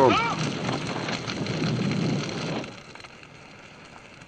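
A large fire burning a building, crackling and rumbling, which stops abruptly about two and a half seconds in and leaves a low hiss.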